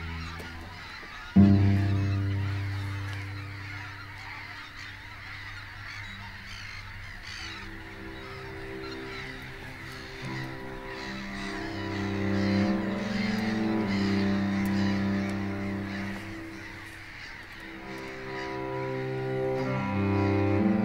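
A large flock of geese calling in flight, a constant chatter of many honks. Under it runs slow music of sustained low chords that come in abruptly about a second and a half in and shift slowly.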